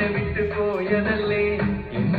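Malayalam film song playing from a television: a voice singing held, gliding notes over instrumental backing.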